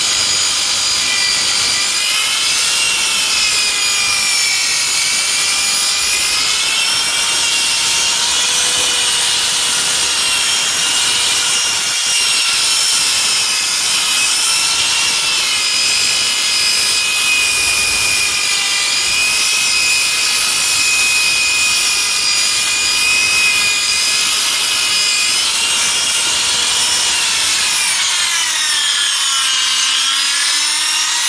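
Handheld electric polisher running at high speed with an abrasive pad on a ceramic tile, sanding out a scratch: a steady motor whine over the rubbing of the pad on the glazed surface. The whine wavers in pitch as the tool is pressed and moved, and dips and recovers near the end as the tool comes off the tile.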